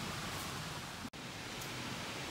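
Steady, low background hiss of ambient noise with no distinct events, broken by a brief dropout about a second in.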